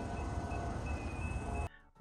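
Steady outdoor noise with a low rumble, typical of wind buffeting the microphone, that cuts off suddenly near the end.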